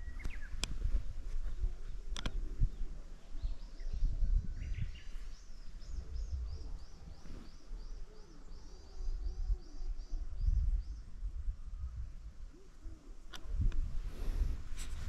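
A small songbird singing a fast run of repeated high notes, about five a second, for some four seconds starting a few seconds in, with a couple of separate chirps. Under it runs a steady low outdoor rumble with a few sharp clicks.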